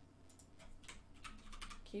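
A short run of faint computer-keyboard keystrokes, typing a value into a field.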